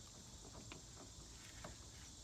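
Near silence: faint outdoor ambience with two or three faint ticks, about a second apart.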